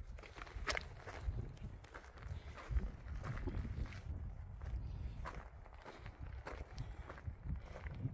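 Footsteps of a hiker on a rocky, stony trail, crunching at a steady walking pace over a low rumble.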